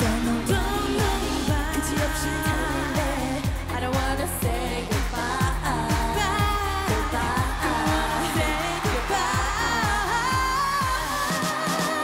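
A K-pop girl group's song: women's voices singing over a dance-pop backing track with a steady kick-drum beat. The bass and drums drop out near the end while the singing carries on.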